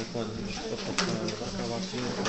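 Indistinct chatter of several people talking in a meeting room, with a sharp click about a second in.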